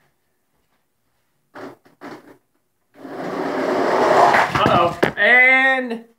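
Toy monster trucks rolling down a plastic drag-race ramp: a rattling rumble of plastic wheels that grows louder over about two seconds, ending in a few sharp knocks.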